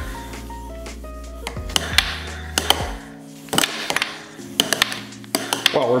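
Background music with held notes, over several sharp, irregularly spaced plastic clicks as hand-held mallets strike the puck on a small tabletop air hockey table.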